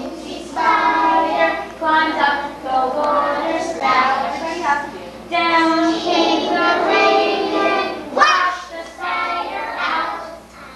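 Young children singing a song, line by line, with short breaks between phrases and a quick upward swoop in pitch near the end.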